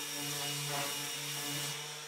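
Random orbital sander with a dust-extraction hose, sanding a thin oak board: a steady motor hum with a hiss, the hiss easing off near the end.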